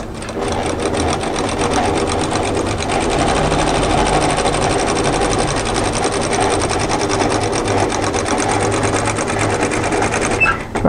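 Industrial single-needle lockstitch sewing machine running at a steady fast stitch, feeding binding through a binder attachment onto the fabric edge; it speeds up about half a second in.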